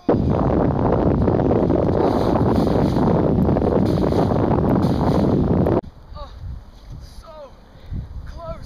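Loud, even rushing noise on the microphone, like wind buffeting or handling noise, that starts suddenly and cuts off suddenly after nearly six seconds. Faint falling moans of a voice follow.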